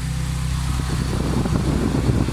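VW Gol Power's engine idling steadily with its electric radiator cooling fan running, switched on as the engine reaches operating temperature after a timing-belt job and coolant refill.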